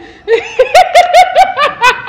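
A person laughing in a rapid run of short, high-pitched 'ha' bursts, about six a second, starting shortly after the start.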